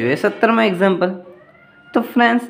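Speech only: a person talking in short phrases, with a brief pause just after a second in.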